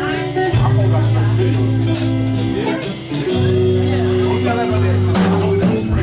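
Live funk band playing: long held low bass notes that shift every second or two under drum kit and electric guitar, with a woman's voice over the band at moments.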